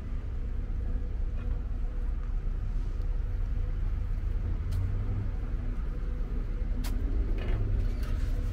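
Steady low rumble of city street traffic, with a faint steady hum and a couple of sharp clicks near the middle and toward the end.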